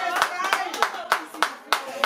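Rhythmic hand clapping by a group, about three claps a second, with voices over it.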